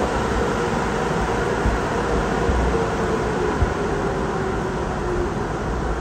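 A BMW E90 sedan's engine running steadily, with a low rumble under an even hiss.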